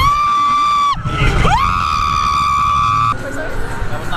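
A high-pitched voice letting out long held yells at one steady pitch: one about a second long at the start, then a longer one of about a second and a half, each sliding up at the onset and dropping off at the end.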